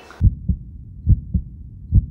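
Heartbeat sound effect: low double thuds, lub-dub, three pairs a little under a second apart over a low rumble, used to build suspense.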